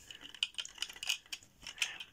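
Light clicks and rattles of plastic Lego pieces being handled and fitted together.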